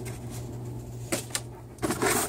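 Light handling noise from unpacking a cardboard box: soft rustles and a few small clicks, a little after a second in and again near the end, as a power cord and packing are lifted out.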